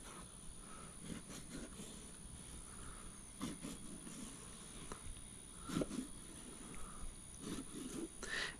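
Faint, soft cutting sounds of a thin flexible fillet knife scoring crosshatch cuts through a flounder's skin and flesh, a few short strokes at irregular intervals.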